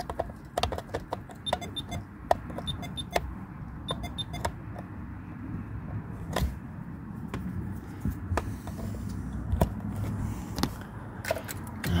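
Scattered clicks and light rattles as a handheld OBD code reader and its cable are handled and plugged into the car's diagnostic port, over a low steady rumble.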